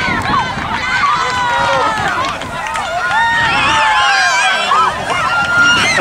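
Many high-pitched children's voices shouting and calling over one another, loud and continuous.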